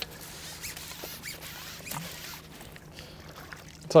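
Low background hiss with a few faint clicks and rustles from a fishing pole and landing net being handled at the water's edge.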